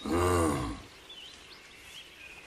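A short, deep, animal-like growl from the Bigfoot creature, under a second long, rising and then falling in pitch.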